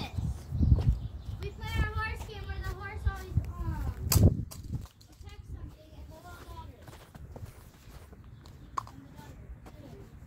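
A child's voice calling out in the first half, with words not made out, over a low rumble and clicks of the phone being handled and carried. It goes quieter after about five seconds, leaving faint voices and handling clicks.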